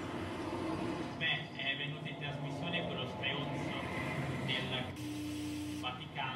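Indistinct speech from the soundtrack of a projected film, played over a hall's loudspeakers. Near the end a steady hum and a hiss set in.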